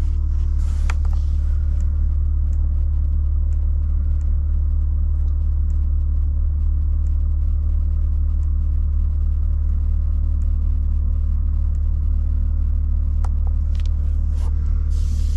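BMW M3 Competition's twin-turbo inline-six idling steadily, a deep even rumble heard from inside the cabin, with a few faint clicks over it.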